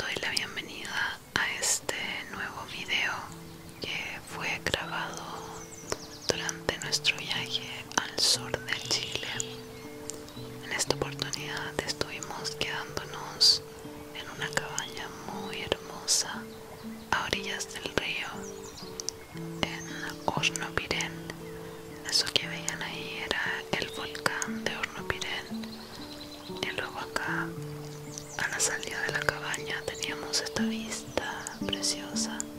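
Soft whispered voice over background music of long held low notes that change every second or two.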